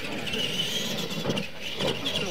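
Radio-controlled Clod-style monster trucks racing on dirt, their electric motors giving a high whine that rises and falls.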